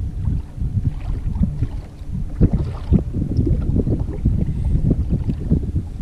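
Personal watercraft running at speed across choppy water, with wind buffeting the microphone in uneven gusts and thumps.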